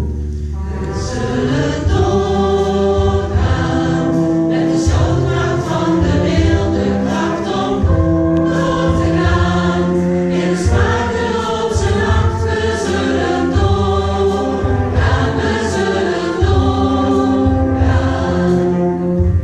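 Large mixed choir singing held chords together with a full orchestra, heard live in a big hall, over a steady low beat.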